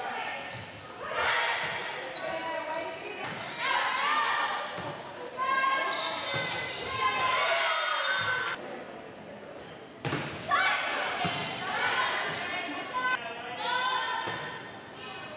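Volleyball game sounds in a gymnasium: players and spectators shouting and calling out, with the ball being struck several times, all echoing in the large hall.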